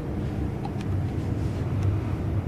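Low steady rumble in a ship's cabin, typical of the vessel's engines and machinery carried through the hull, with a few faint clicks.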